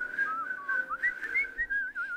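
A woman whistling through pursed lips: one mostly steady note with a few brief higher and lower notes, and a quick warble near the end.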